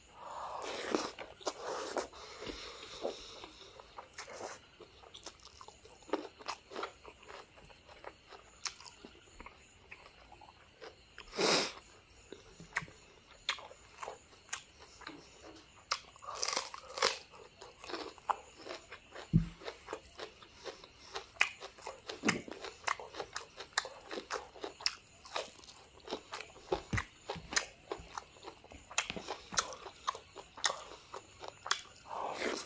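Close-miked mouth sounds of a person eating rice and boiled egg by hand: chewing, with many short wet clicks and smacks throughout. Louder smacks come about eleven and a half seconds in and around sixteen to seventeen seconds.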